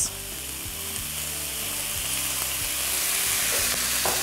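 Beef and vegetables sizzling in a hot wok as soy sauce is poured in. The sizzle grows steadily louder.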